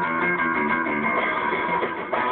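Rock band playing live: an electric guitar riff over bass guitar, loud and continuous, with the song having just kicked in.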